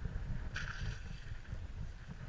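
Low, uneven rumble of wind buffeting the action camera's microphone, with one brief higher-pitched sound about half a second in.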